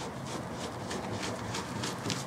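A microfiber cloth scrubbing leftover 3M adhesive-tape residue off a car's painted trunk lid, in quick back-and-forth strokes about four a second.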